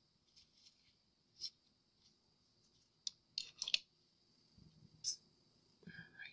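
A few faint, scattered clicks and light taps from craft supplies being handled on a tabletop.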